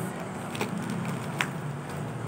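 Steady low hum of motor traffic from the street, with two short sharp clicks about a second apart.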